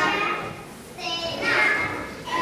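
Young children's voices in a large hall, fading to a brief lull about half a second in, then a high voice rising again in the second half.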